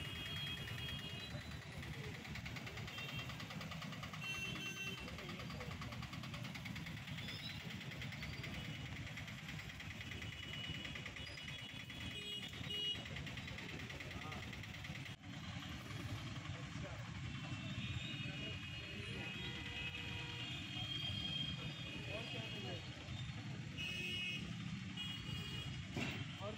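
Street traffic in a jam, with motorbike, scooter and car engines running and people's voices in the background. Now and then short, steady, high-pitched beeps, like vehicle horns, sound over it.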